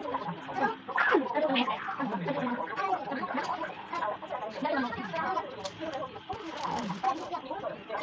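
Indistinct voices talking in the background, with no other sound standing out.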